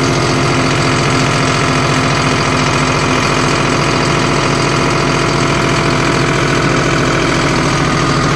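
John Deere CRDI common-rail diesel tractor engine held at full throttle, running at a steady, unchanging high RPM.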